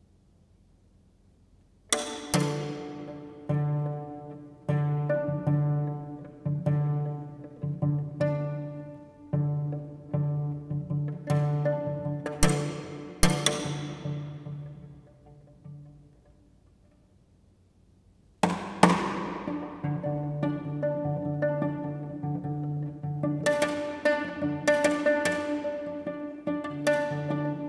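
Viola and cello playing pizzicato: plucked notes that ring and fade in the church's reverberation. The playing begins about two seconds in, breaks off for a couple of seconds past the middle, and then resumes.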